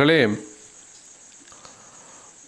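A man speaking in Tamil finishes a phrase just after the start. Then comes a pause in which only a faint, steady, high-pitched background tone is left.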